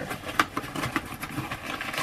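Cardboard shipping box and the paper inside being handled: rustling with scattered small clicks and knocks, one sharper knock about half a second in.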